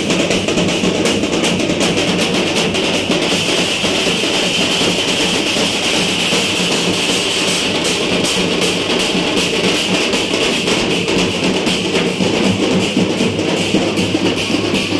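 A street drum band of large steel-shelled drums beaten with sticks, playing a loud, dense, continuous beat.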